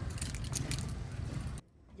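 Light metallic jingling of small metal pieces over a low background rumble, cutting off suddenly near the end.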